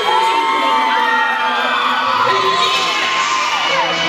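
Audience cheering loudly, many high voices yelling at once and rising and falling in pitch.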